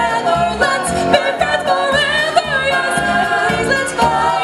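A vocal group of young singers singing in harmony, several voices together, over accompaniment with a steady low beat.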